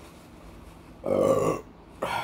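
A single burp about a second in, lasting about half a second.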